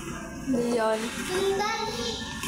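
A young child singing, a short run of held notes stepping up and down, starting about half a second in.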